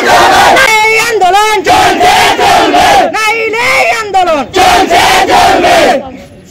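A crowd of school students shouting protest slogans together, loud and in repeated phrases; the shouting cuts off suddenly at the end.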